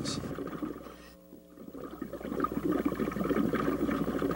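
Scuba diver's exhaled air bubbles gurgling, heard underwater. They die away about a second in, then build up again.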